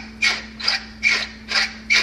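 Manual salt and pepper grinder being twisted by hand: a series of short rasping clicks, about two or three a second.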